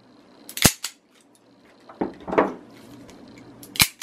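Smith & Wesson Performance Center eight-shot N-frame .357 revolvers dry-fired in double action: one sharp hammer-fall click about half a second in and another near the end. The first click is from the 327 Pug Nose, the second from the stainless 627 Bloodwork.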